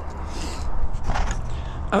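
Wind rumbling on a handheld action camera's microphone, with brief rustling and handling noise as the camera is picked up and turned.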